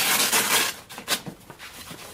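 A fabric carry case being handled: a loud rush of rustling and rubbing for the first half-second, then a few softer scrapes and rustles.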